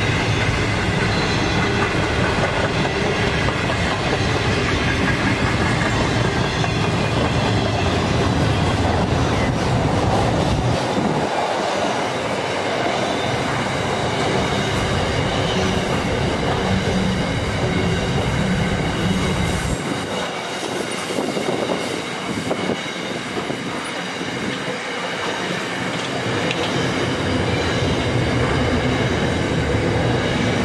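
Intermodal freight train of container wagons rolling steadily past at close range: a continuous rumble of steel wheels on rail with clicking over rail joints and a thin high whine running above it. The low rumble thins out briefly twice, before the noise builds again near the end.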